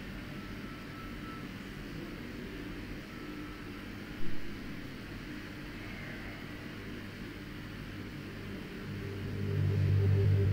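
A steady low hum runs throughout, with a single sharp knock about four seconds in. Near the end a low sustained tone swells up.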